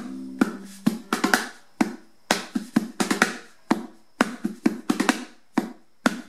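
Ukulele played as percussion: sharp taps and muted strums on the strings and body in a quick, uneven drum-like rhythm, with the strings ringing faintly between hits.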